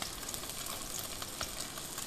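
Salmon frying in a little vegetable oil in a pan over moderate heat: a steady sizzle with a few faint crackles.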